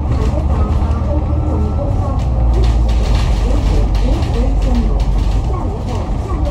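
Alexander Dennis Enviro500 MMC double-decker bus under way, heard from the upper deck: a steady low engine and road rumble. Faint, indistinct voices come and go over it.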